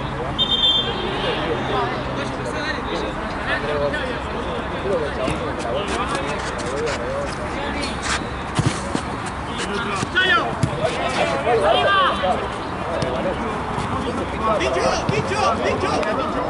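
Football players shouting and calling to each other during play, with several sharp thuds of the ball being kicked on artificial turf.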